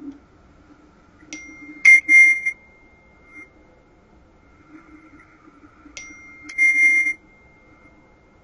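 A high, bell-like ringing tone sounds twice, about four and a half seconds apart. Each time a steady high note starts, and a louder ringing burst follows about half a second later.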